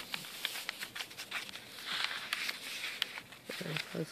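Paper rustling as hands slide a postcard and move the coffee-dyed paper pages of a handmade junk journal, with many small scattered clicks and taps of card against paper.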